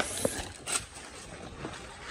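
Dry banana-stem sheaths and fibres rustling and scraping as they are cut and pulled away with a knife, with a short crisp rasp about three-quarters of a second in.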